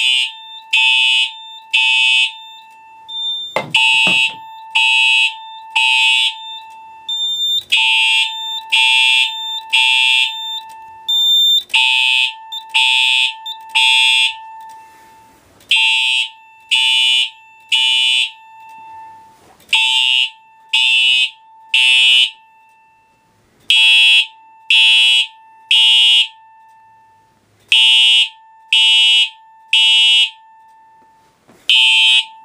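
Simplex fire-alarm horn and chime sounding the temporal-3 evacuation pattern: three short blasts about a second apart, then a pause, repeating every four seconds. The alarm was set off by a Cerberus Pyrotronics PE-3 smoke detector during a smoke test. There is a brief knock about four seconds in.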